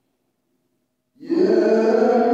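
Near silence, then a little over a second in a man's voice starts a long, held chanted note: the opening of the call chanted before the dawn (Subuh) prayer.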